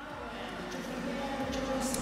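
Ambience of an indoor swimming arena: a steady low murmur of the hall, slowly growing louder.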